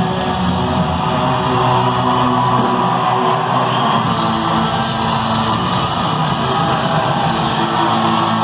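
A rock band playing live through a concert PA in a theater: distorted electric guitars lead a loud, steady instrumental passage over the full band, with no singing.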